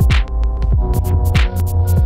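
Instrumental electronic beat: a heavy bass that drops in pitch on each hit, a sustained synth chord, and quick high-pitched percussion ticks.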